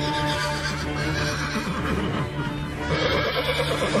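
Background music with steady held tones, and a horse whinnying over it in the second half.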